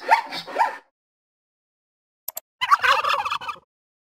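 A recorded wild turkey gobble plays for about a second, a fast warbling call, just after a quick double mouse-click near the middle. In the first second there are three short rising animal calls.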